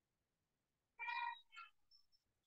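Two short, high-pitched, voice-like calls about a second in: a longer one, then a brief second one.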